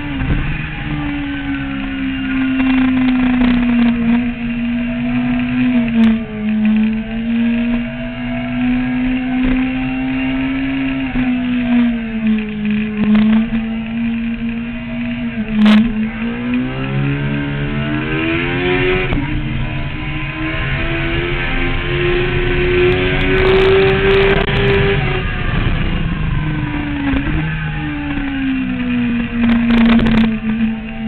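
Honda CBR954RR inline-four engine at track speed, heard from on the bike: its pitch holds and dips at each gear change, climbs steadily through the middle, then falls away near the end, over wind rush. One sharp click about halfway through.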